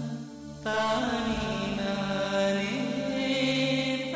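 Background score: a sung, chant-like vocal line over a steady low drone. It swells louder about half a second in.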